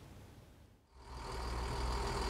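A heavy dump truck's diesel engine running, fading in about a second in. It is a low rumble with a steady high tone over it.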